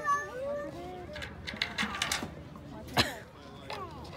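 Children's high, wavering calls and squeals without clear words, with one sharp knock about three seconds in.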